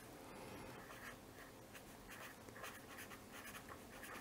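Felt-tip pen writing a word on paper: faint, short scratching strokes, mostly from about a second in.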